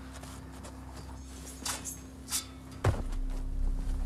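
Footsteps and rustling in forest undergrowth at night, with one sharp thud about three seconds in, after which a low rumble sets in.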